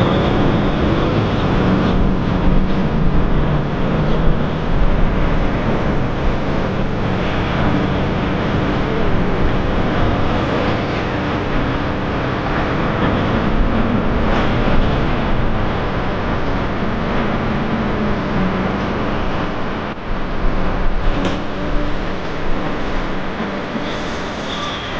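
Outboard motor of a center-console boat running steadily as the boat cruises past, with the rush of water and wake along the hull.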